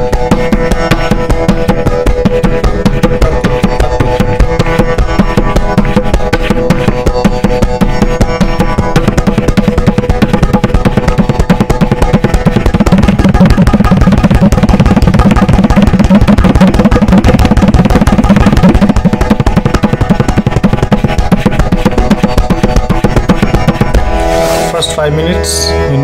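Tabla played with both hands in a rapid, continuous stream of finger strokes, practising a stroke pattern. The strokes are heaviest in the middle, with deep bass strokes. They stop about two seconds before the end.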